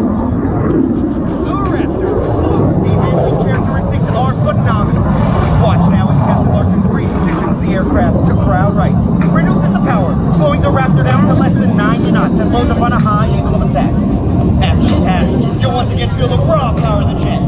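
Distant F-22 Raptor's twin turbofan jet engines giving a steady, loud rumble as it flies across the sky, with people's voices over it.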